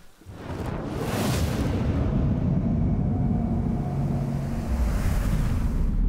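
Fire whoosh and rumble sound effect: a rising rush about a second in, then a loud, steady deep rumble that cuts off abruptly at the end.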